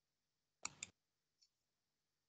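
Two quick computer-mouse clicks about a fifth of a second apart, then a fainter click, over near silence.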